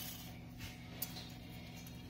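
Wire whisk stirring biscuit pieces in milk in an aluminium pot: a few faint swishes and a light click about a second in, over a steady low hum.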